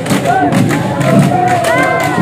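Live Bihu folk music: dhol drums beating a quick, steady rhythm under a high, sliding sung melody, with crowd noise.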